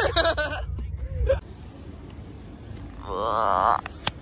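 A girl laughing and singing over the low rumble of a bus engine. The sound cuts off after about a second and a half to a quieter background, then a short wavering vocal sound near the end.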